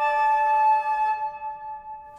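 Concert flute holding an A, the upper note of a fifth played just after a D, with the lips covering too much of the embouchure hole: the A is pulled flat, so the fifth sounds too small. The note fades away in the second half.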